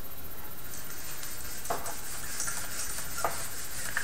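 Felt whiteboard eraser rubbing back and forth across a whiteboard, a steady scrubbing swish with a couple of light knocks of the eraser against the board.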